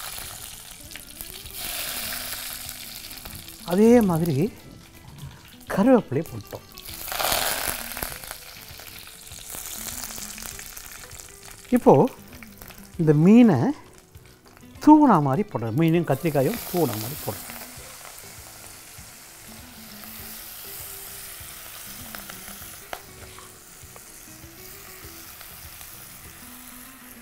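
Fish and brinjal masala frying in a clay pot: a steady sizzle with stirring, surging louder twice in the first few seconds. A man's voice cuts in with a few short loud utterances through the middle.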